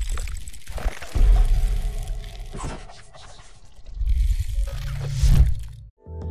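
Sound effects of an animated logo intro: deep low booms and noisy effects over some music, in several swells, cutting off abruptly just before the end.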